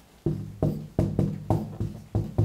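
A whiteboard marker knocking against the board stroke by stroke as letters are written: about six sharp knocks, each followed by a short low ringing from the board panel.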